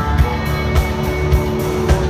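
A live country-rock band playing amplified through an arena sound system, with guitars and held melody notes over a steady drum beat of about two hits a second.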